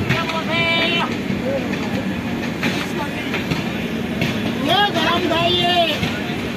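Running noise of a passenger train at speed, heard through an open coach window or door, with the wheels clattering on the track. Voices call out twice over it, about half a second in and again near the end.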